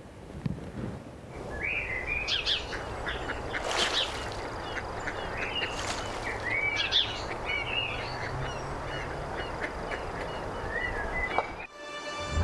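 Many birds chirping and calling in short, quick notes over a steady background hiss, stopping just before the end.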